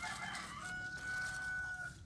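A rooster crowing: a short broken opening, then one long held note that stops just before the end, over a light rustle of dry leaves.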